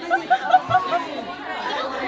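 Several young women talking over one another, with a quick run of short repeated syllables in the first second.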